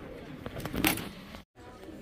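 Metal wire shopping cart rattling as it is pushed, with a sharp metallic clink just under a second in.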